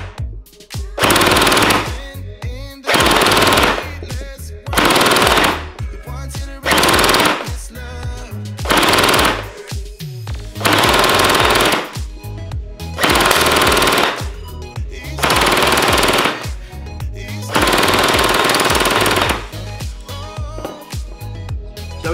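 M249 gel blaster with Gen 8 gearbox internals firing full-auto bursts, about nine bursts of roughly a second each, one every two seconds, the last one longer. The gearbox cycles at about 20 to 28 shots a second.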